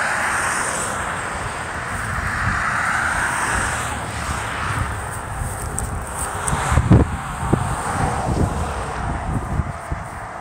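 Wind buffeting a phone's microphone: a rushing that swells over the first few seconds, then uneven low thumps in the second half.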